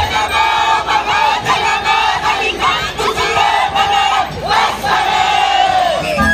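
A group of Andean carnival dancers shouting and whooping together in high voices during a break in the music, the cries rising and falling in pitch, with one long falling cry near the end.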